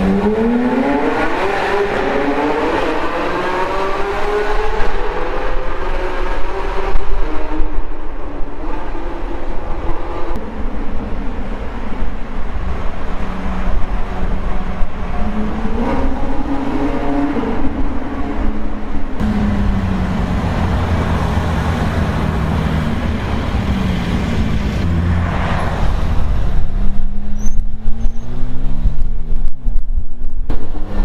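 Car engine accelerating, heard from inside the cabin in a road tunnel. Its pitch rises over the first few seconds and again about halfway, it settles into a lower steady run, and it grows louder near the end.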